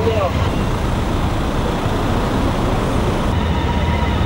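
City road traffic: a steady rumble of passing cars, with a voice briefly at the very start.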